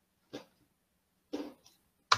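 Two brief, faint breaths about a second apart, with quiet room tone between.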